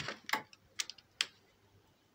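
A handful of sharp plastic clicks and knocks as a mains plug is pushed and seated into a power-strip socket, spread over the first second or so.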